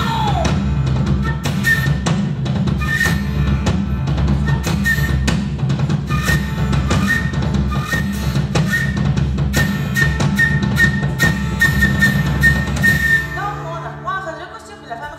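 Live band playing an instrumental passage: regular drum strikes over a dense low bass line, with short high notes repeating. The music dies away shortly before the end.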